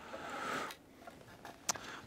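Faint handling noise of a small fishing rig on a table: a brief soft rustle at the start, then a single small click near the end.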